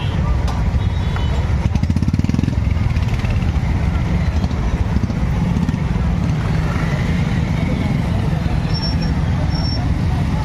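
A group of motorcycles riding past in a line, their engines running together as a steady low rumble, with one bike's engine loud and close about two seconds in.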